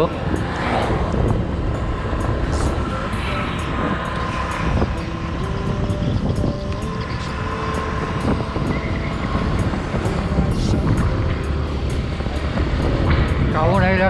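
Steady, fluctuating low rumble of a moving vehicle under way, engine and road noise mixed with wind on the microphone.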